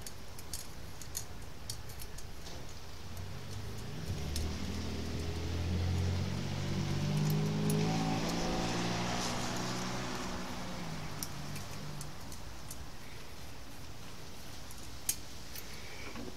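A motor vehicle passes by: engine and tyre noise swell to a peak about halfway through, then fade over several seconds. Small metal clicks come from a bolt and washer being handled and fitted through a TV mount bracket.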